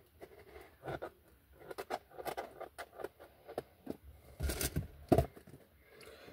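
A small cardboard and plastic product box for a phone holder being opened by hand: irregular clicks, crinkles and rustles of packaging, with two louder rustles near the end.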